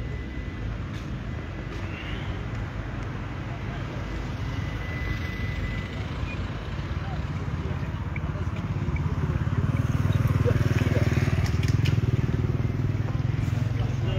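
A motor vehicle's engine running, growing louder about two thirds of the way in and then holding, over background voices and street noise.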